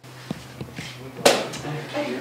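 Faint voices of a group of people in a room, with a few small clicks and one brief, sharp noise just over a second in.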